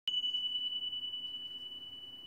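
A single high, bell-like tone struck once at the very start, ringing on one clear pitch and slowly fading away.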